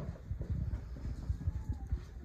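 Soft, irregular low thumps, several a second, with faint rustling and no voice.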